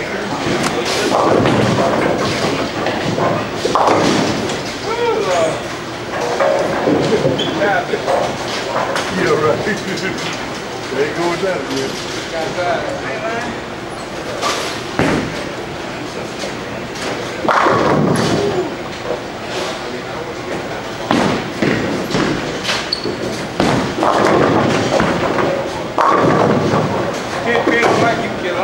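Bowling alley sound: continuous background chatter of bowlers, broken several times by the thud and crash of bowling balls hitting the lanes and pins.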